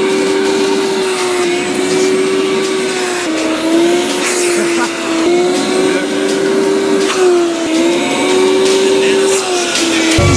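Vacuum cleaner running steadily with a high motor hum while its corrugated hose nozzle is pressed against clothing and a person's cheek. The pitch dips briefly several times.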